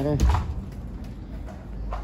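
A woman's voice trailing off in the first half-second, with a brief low rumble on the phone's microphone, then a quiet steady background.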